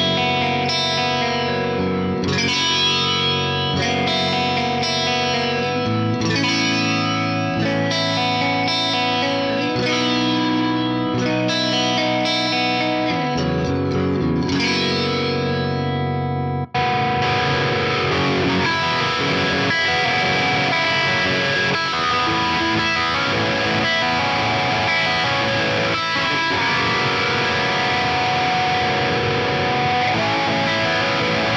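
Electric guitar through an Axe-Fx III with the Hemisflange flanger on. For about the first 17 seconds it plays ringing clean chords through Fender Deluxe Reverb amp models. After a brief break it switches to a distorted high-gain amp sound, still flanged.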